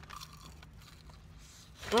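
Faint crunching and chewing as a breaded mozzarella stick is bitten into, over a low steady hum; a satisfied "mm" comes in at the very end.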